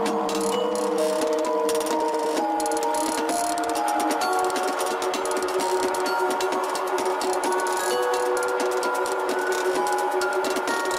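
Electronic background music: held synth notes stepping from pitch to pitch over a fast, crackling click texture.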